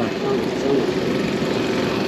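Steady road traffic noise: vehicle engines running with a low, even hum.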